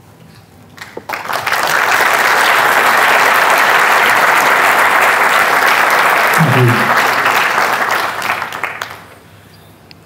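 Audience applauding in a large hall. The clapping swells in about a second in, holds steady, then fades away near the end.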